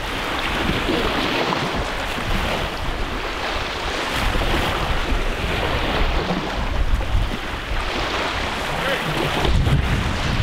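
Wind blowing across the microphone over small waves washing onto the shore: a steady rush, with gusty low rumbling through the second half.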